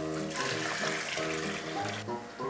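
Background music over a kitchen tap running into a bowl, the water splashing as pork bones are rinsed by hand; the water stops near the end.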